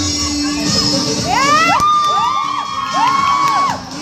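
Crowd of schoolchildren cheering and whooping over dance music from a loudspeaker, with several long rising-and-falling high calls from about a second in until just before the end.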